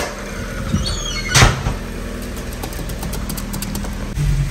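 A car engine idling steadily in an enclosed garage. A loud thud comes about one and a half seconds in.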